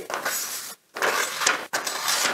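A sheet of paper rasping and tearing as a German-made Henckels chef's knife is drawn through it in three strokes of about half a second each, a paper test of the blade's sharpness. The knife only partly cuts the paper, a sign that its edge is not very keen.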